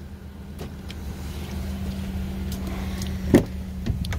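A car door is opened, with a sharp latch clack about three and a half seconds in over a steady low hum and a few light clicks.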